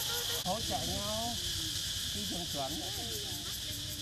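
Several people's voices talking in the background, over a steady high hiss.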